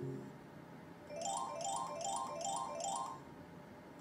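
Slot machine game sounds: the low background music loop stops at the start, and about a second in a jingle of five quick, rising chime figures plays over about two seconds, as the machine signals a win.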